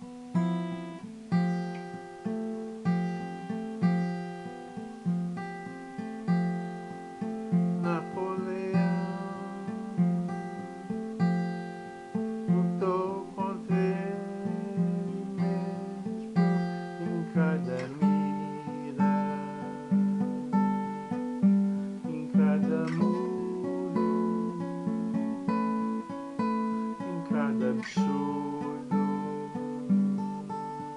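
Acoustic guitar played solo in a steady rhythm of plucked chords moving through a repeating progression, with a few short rising squeaks along the way.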